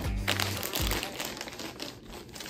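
A thick clear plastic zip-top bag crinkling as it is handled and opened, over background music with low held notes that fade out about a second in.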